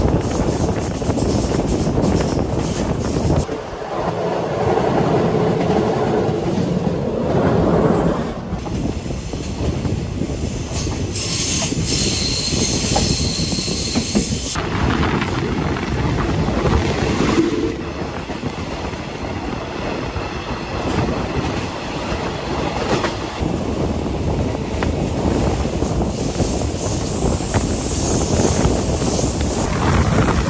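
A passenger train running along the track, heard from beside a carriage: the continuous noise of wheels on rails and rushing air, with rail clatter. For a few seconds in the middle a bright, high hiss joins in.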